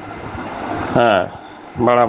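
A man's voice in a recorded lecture: a short spoken syllable about a second in and another starting near the end. A steady rushing background noise runs beneath.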